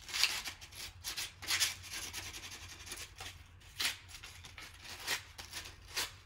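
Hand sanding along the edges of a painted leaf cutout: a series of irregular short rasping strokes, distressing the white paint for a rustic look.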